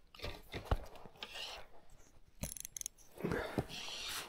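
Spinning reel and rod handling noises as a large pike is played on the line: scattered clicks and rustles, with a quick run of ticks about two and a half seconds in.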